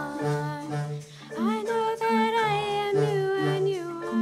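Children singing a song together to instrumental accompaniment, with one note held for about two seconds in the second half.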